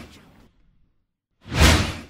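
Whoosh sound effects of an on-screen wipe transition. The first whoosh is fading away at the start, and after a moment of silence a second whoosh swells about one and a half seconds in and is fading at the end.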